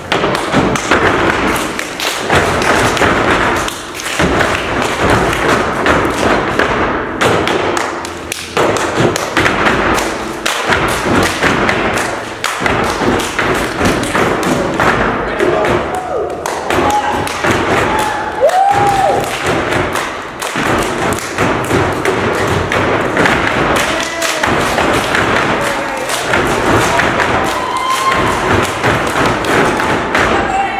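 A step team stepping: rapid rhythmic foot stomps on a wooden stage, hand claps and body slaps, with voices calling out now and then.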